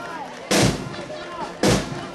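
Marching band drums beating a march: two heavy drum strikes, about half a second in and near the end, each ringing briefly.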